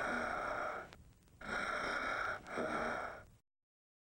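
Three raspy, breathy gasps, the last two close together.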